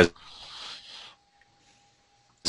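A faint rustle lasting about a second, then near silence with a faint steady hum tone.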